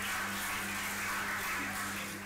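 Audience applauding, with a steady low electrical hum underneath.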